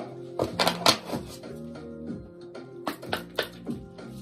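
An oracle card deck shuffled by hand: a series of crisp card slaps and riffles, in two clusters about half a second to a second in and again around three seconds in. Underneath runs background music with soft, sustained tones.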